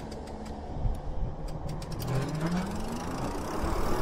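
Wind and road rumble while riding an e-bike, with a few light ticks in the first two seconds. About two seconds in, a short rising whine from the electric motor as the bike speeds up.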